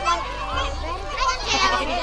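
Children's voices and adult chatter from a small crowd, several people talking at once.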